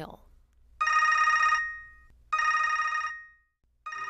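Telephone ringing twice: two short trilling rings about a second and a half apart. It is the ring of a call dialled automatically from a cell phone.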